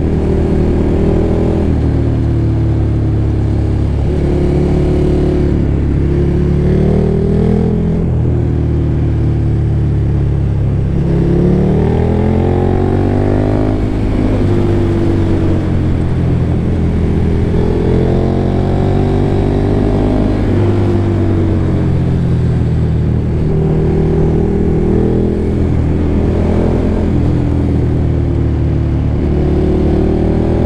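KTM motorcycle engine under way, its pitch rising and falling as the throttle is rolled on and off through bends, with a long climbing rev near the middle and another a few seconds later. Steady wind and tyre rush run underneath.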